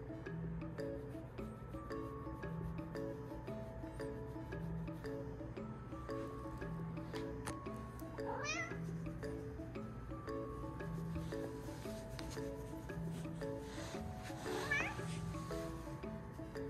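A kitten meows twice over background music: two short rising meows, one about halfway through and a louder one near the end.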